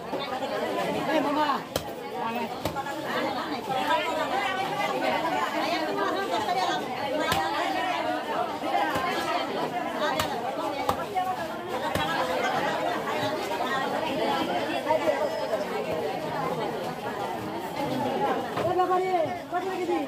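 Overlapping chatter of several voices, with a few sharp knocks scattered through it from a blade chopping fish.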